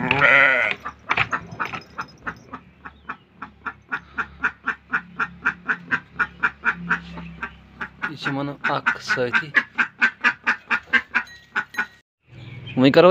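A sheep bleats once at the start. Then a lamb chews silage with a steady crunching, about four crunches a second.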